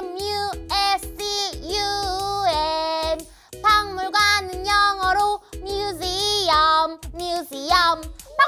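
A children's song: a high, child-like voice sings a run of short held notes, spelling out 'museum' letter by letter.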